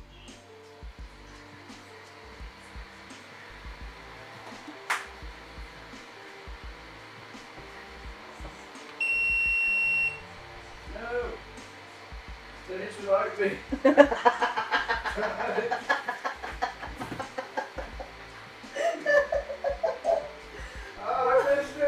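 AnkerMake M5C 3D printer giving a single steady high-pitched beep, about a second long, signalling that the print has finished.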